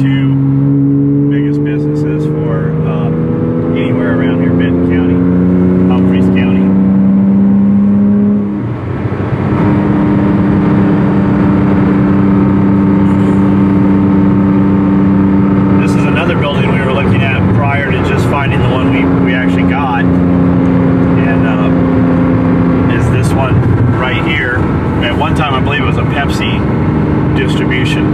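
Porsche Cayman S flat-six engine heard from inside the cabin. It pulls up through a gear with steadily rising pitch for about eight seconds, dips briefly at a gear change, then settles into a steadier cruising note over road noise.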